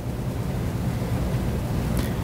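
Steady low rumble of room background noise with no speech.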